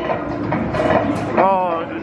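Busy arcade din of voices and machine music. A voice rises and falls briefly in the second half.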